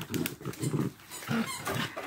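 Dogs play-wrestling, making a run of short, low growls and grunts, with a few light clicks.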